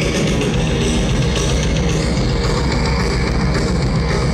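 Live rock band playing an instrumental passage, electric guitars and drum kit, loud and steady, heard through the PA from far back in an open-air crowd.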